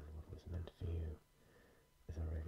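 Close-miked whispering in short bursts during the first second or so, then a quiet pause.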